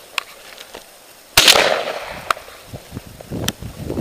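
A single shotgun shot about a second and a half in: a sharp crack with a short ringing tail. A few light clicks are heard before and after it, and another loud burst starts right at the end.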